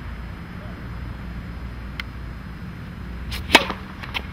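Tennis racket striking a ball: one sharp crack about three and a half seconds in, after a single fainter tap around two seconds in, over a steady low rumble.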